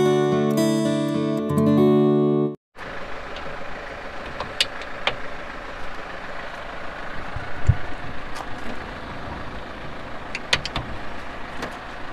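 A short acoustic guitar jingle that stops abruptly about two and a half seconds in, followed by steady outdoor background noise with scattered light clicks and one low thump near the middle.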